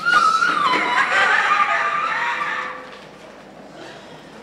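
A person's high-pitched wordless cry, wavering and gliding in pitch for about two and a half seconds, then giving way to quieter room noise of the congregation.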